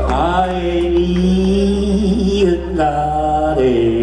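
Blues harmonica played into a hand-held vocal microphone, long held notes that bend into pitch and change a few times, over a live rock band's electric guitar, bass and drums.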